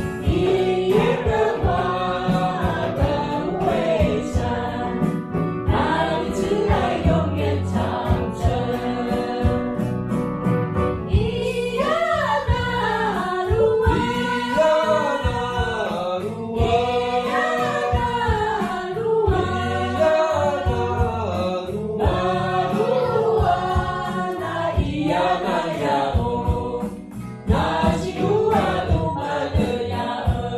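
A mixed church choir singing a song in rehearsal, led by a woman singing into a microphone. The singing runs on throughout, with a short drop near the end.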